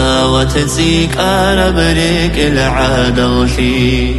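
A solo voice singing a melismatic, chant-like Avar-language song over a steady low drone.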